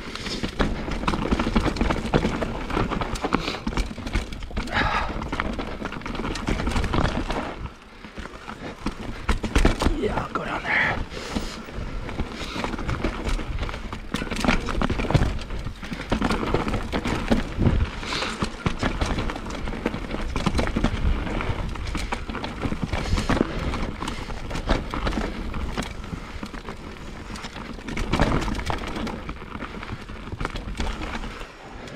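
Mountain bike ridden down a rough dirt singletrack: tyres rumbling over dirt, roots and rocks, with a constant rattle of chain and frame and knocks from the bumps. The noise dips briefly about eight seconds in.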